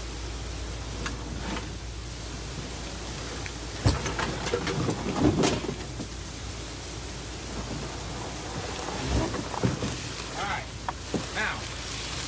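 Canoe hull knocking and scraping against rocks as it is lowered by hand, loudest about four to five and a half seconds in and again around nine seconds in, over a steady rushing noise.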